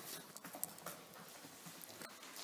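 Quiet room tone with a few faint, irregular small clicks and taps.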